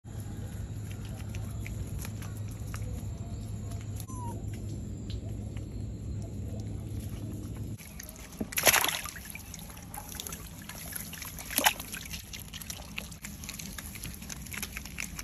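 A steady low rumble of background noise, then a smooth-coated otter pawing in a basin of water full of small fish, with sloshing and small splashes. Two louder splashes stand out, the first just after the halfway point and the second about three seconds later.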